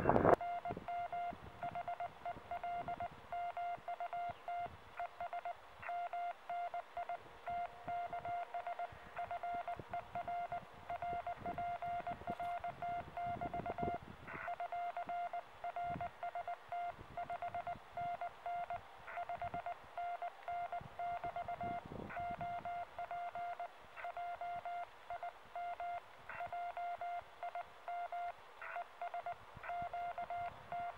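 Morse code (CW) from a low-power amateur radio transceiver on 40 metres: a single steady-pitched beep keyed on and off in dots and dashes, the operator's sidetone as he sends a 599 signal report, his name and his location.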